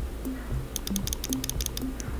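Background music with short low notes. About a second in comes a quick run of about a dozen small clicks from a computer mouse working the chart's zoom controls.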